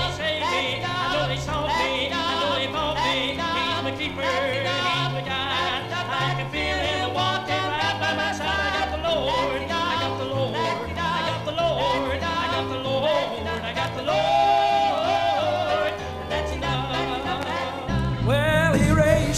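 An old recording of a gospel song played back: a singer with a wide vibrato over a moving bass accompaniment. The sound is dull and muffled, with no treble, as from an old low-fidelity recording.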